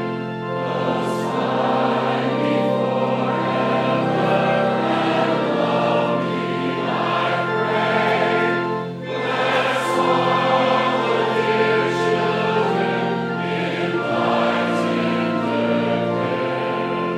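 A congregation sings a hymn together over a steady, held low accompaniment. There is a brief dip between phrases about nine seconds in.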